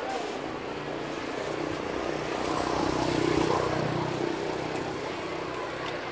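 A motor vehicle's engine passing by, its hum swelling to a peak about three seconds in and then fading.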